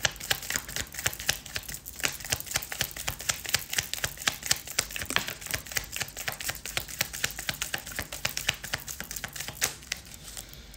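A deck of tarot cards being shuffled by hand: a fast, irregular stream of sharp card clicks and snaps that stops near the end.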